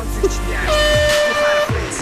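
A game-show horn sound effect: one steady, horn-like tone lasting about a second, over background music.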